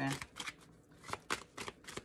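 A deck of tarot cards being shuffled by hand, giving a string of short, irregular card clicks and slaps.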